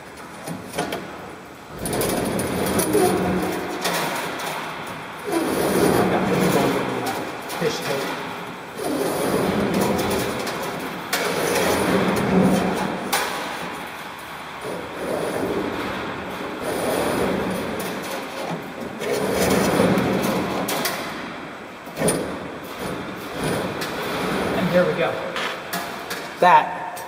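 Fish tape and wire being pulled by hand through lubricated EMT conduit in repeated long pulls, about seven swells of rasping noise, one every three to four seconds.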